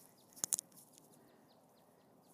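Quiet outdoor background with faint, repeated bird chirps, broken by two sharp clicks about half a second in.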